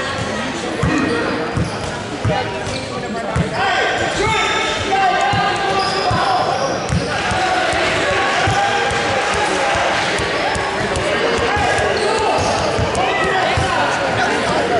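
A basketball bouncing on a hardwood gym floor, irregular thumps, with voices calling out and echoing in the large gym.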